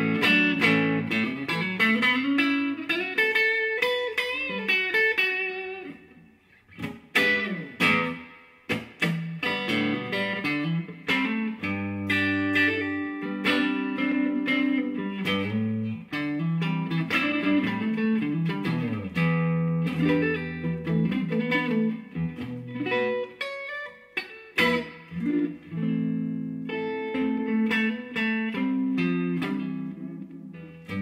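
Electric guitar, Stratocaster-style, played through a Laney Cub Supertop valve amp head with EL84 output valves and its matching cabinet, gain at about half. Chords and single-note phrases with string bends in a lightly driven, edge-of-breakup tone, with a short pause about six seconds in.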